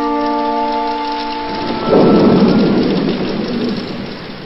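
Sustained music chords fade out, and about two seconds in a loud thunderclap breaks over steady rain, then eases off: a thunderstorm sound effect.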